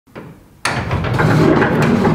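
Large wooden workshop door being pushed open. The noise starts suddenly about half a second in and runs on steadily.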